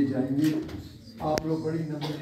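A low voice murmuring prayer in drawn-out, indistinct tones, with a single sharp click about two-thirds of the way through.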